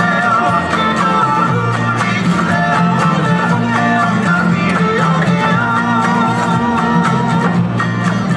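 A recorded song with plucked guitar and a melody line played over PA loudspeakers, accompanying a dance performance.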